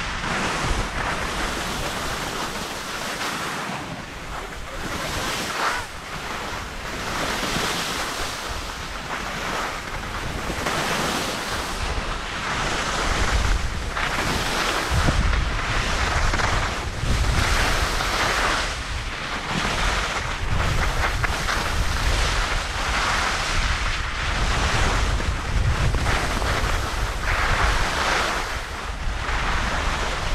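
Skis scraping over firm, cut-up snow through a series of turns, the noise swelling with each turn every second or two. Wind buffets the microphone with a low rumble, heavier in the second half.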